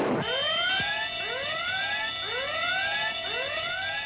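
Spaceship emergency alarm sounding in repeated rising whoops over a steady high tone, just after a short crash dies away at the start. It is the warning for a meteor hit that punctured the number two nitric acid tank.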